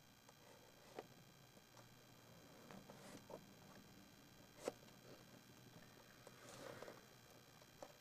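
Near silence inside a car: a faint low hum with a few soft clicks, the clearest about one second in and near the middle, and a brief soft rustle near the end.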